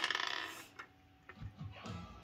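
A short raspy rattle right at the start, then faint scattered clicks and taps of plastic Lego figures and pieces being handled.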